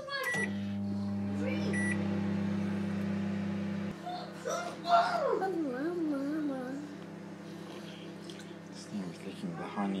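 Microwave oven started from its keypad: two short beeps, then the oven's steady low electrical hum as it heats. The hum drops to a quieter level about four seconds in and carries on.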